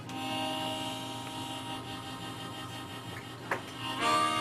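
Acoustic guitar chord struck at the start and left ringing, fading slowly, with a brief sharp squeak a little before the end.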